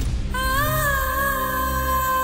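Background music: long held melody notes that bend slightly in pitch over a steady low drone, coming in just after the start.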